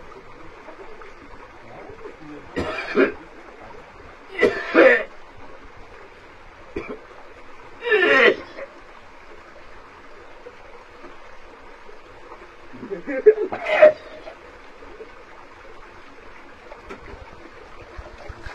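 A man gagging and retching in several short bursts a few seconds apart as he works a length of cane down his throat to make himself vomit, a traditional stomach-cleansing practice. A stream runs steadily behind.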